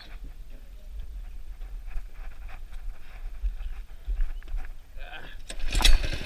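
Go-kart's small 5–6 hp engine being restarted. There is only a low rumble and faint knocks while it is off, then a loud burst near the end as it starts right up and runs with a fast, even firing beat.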